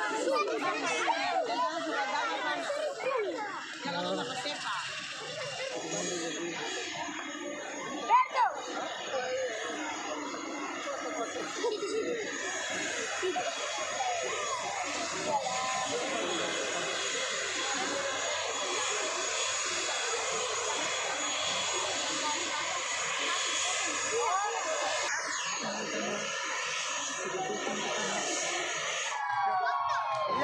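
Crowd of onlookers chattering while an ATR 72 twin-turboprop airliner taxis after landing, its engines giving a steady high whine. There is a sharp knock about eight seconds in.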